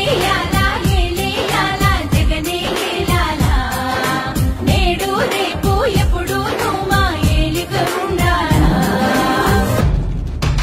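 A Telugu song: a voice singing in long gliding melodic lines over music with a steady beat.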